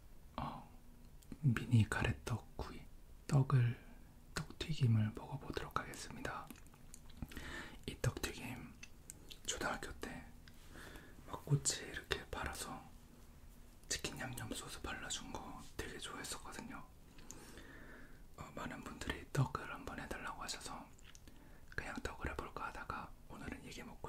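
A man whispering in Korean close to the microphone, in short phrases with brief pauses between them.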